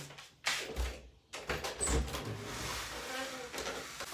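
Wooden interior door being unlatched and opened, with a couple of sharp clunks in the first two seconds and a softer, steadier shuffle after.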